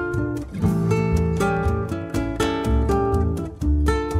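Chamamé played live by an accordion ensemble with a nylon-string guitar and double bass: the accordions hold chords over plucked guitar and low bass notes.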